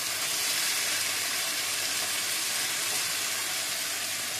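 Diced eggplant, onion and peppers sizzling steadily in a frying pan, a constant hiss as their excess liquid cooks off.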